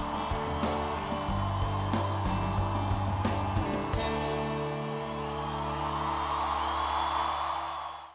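Live rock band of electric guitar, upright bass, drums and keyboards playing long held chords over crowd noise. The sound fades out just before the end.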